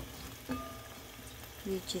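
Squid in a nonstick pan sizzling faintly as it starts to cook in its marinade, with one light knock about half a second in.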